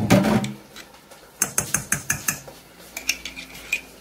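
A small metal spoon scraping and clicking against a jar as cheese sauce is scooped out, in two quick runs of sharp clicks.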